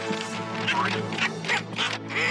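Cartoon background music, held steadily, with a run of four or five quick, high comic noises over it.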